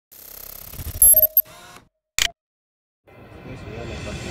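Short electronic intro sting: a swelling tone with a few bright chime-like hits about a second in, then a single sharp burst just after two seconds. From about three seconds, location noise fades up.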